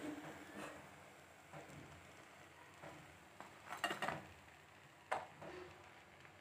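Light clinks of a steel slotted spoon against the frying pan and a plate as a fried puri is lifted out and set down: a small cluster of clinks about four seconds in and one sharper clink about a second later.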